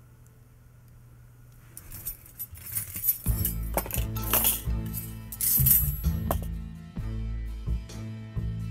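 Metal bonsai tools clinking against each other as they are put back into an aluminium tool case, a handful of sharp chinks, over background music that comes in about three seconds in.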